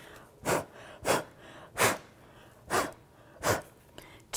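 A woman blowing five short, sharp puffs of breath onto wet watercolour paint on a journal page, pushing the paint into spreading streaks.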